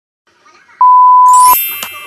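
A loud, steady, single-pitch electronic beep lasting under a second, cut off sharply and followed by a bright chime that rings and fades.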